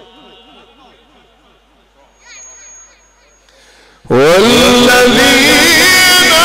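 A quiet stretch of faint voices, then about four seconds in a man's amplified Quran recitation starts loudly through a microphone, opening with a rising glide into a long, melismatic phrase.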